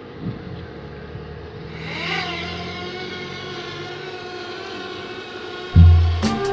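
Small quadcopter drone's motors and propellers rising in pitch about two seconds in as it lifts off, then holding a steady whine of several tones while it hovers. Loud music with a heavy beat comes in just before the end.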